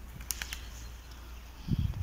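A flock of pigeons on snow, with a few brief wing flaps and then a low thump near the end.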